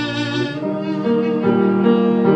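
Piri, a Korean bamboo double-reed pipe, playing a sustained, wavering melody line over cello and piano accompaniment. It moves to new notes about half a second and a second in, and grows a little louder from there.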